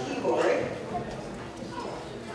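Indistinct voices talking in a large hall, with a few knocks.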